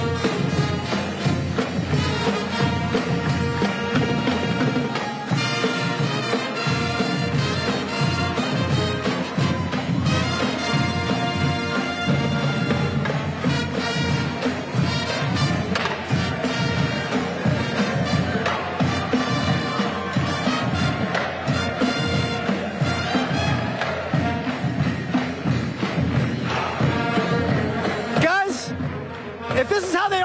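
High school pep band playing, with a drumline of snare, tenor drums, bass drum and cymbals keeping a steady beat under the band. The music stops near the end.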